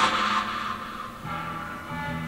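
Recorded music playing through a Bose Solo 5 TV soundbar, streamed over Bluetooth from a phone: held chords that fade, then new notes with a lower bass come in just past halfway.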